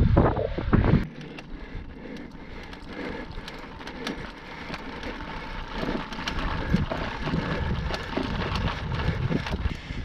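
Wind buffeting the microphone for about the first second, then a road bike rolling over cobblestones, with many small rattling clicks from the bike over the stones.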